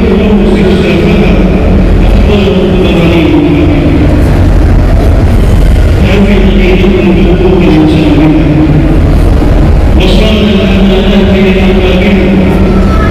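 A single voice chanting in long held notes that glide slowly up and down, pausing briefly about halfway and again near the end, over a steady low rumble.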